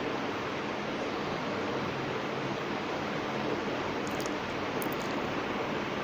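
Steady, even background hiss with no rhythm, and a couple of faint ticks near the middle.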